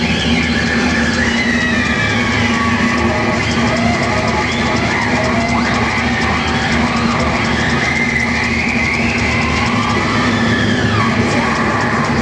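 Distorted electric guitar played live through Randall amplifier stacks, a lead passage with notes bending and sliding up and down in pitch.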